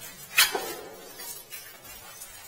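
An orange rod knocking and scraping against the concrete rim of a sump pit: one sharp knock with a short ring about half a second in, then a few lighter scrapes.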